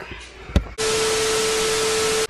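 TV-static transition sound effect: a loud burst of white-noise static with a steady beep tone held through it. It starts a little under a second in and cuts off abruptly, with a single click shortly before it.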